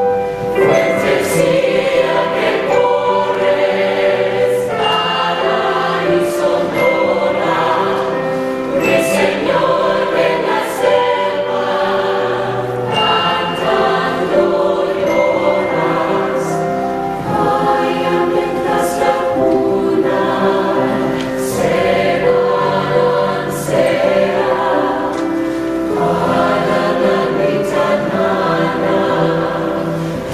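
Mixed choir of men and women singing in harmony, accompanied by a stage piano.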